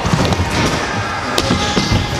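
Stunt scooter wheels rolling over wooden skatepark ramps, a steady rumble with a sharp knock about halfway through, under background music.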